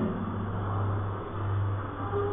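Steady low hum with a faint even hiss of room background, in a pause between spoken phrases.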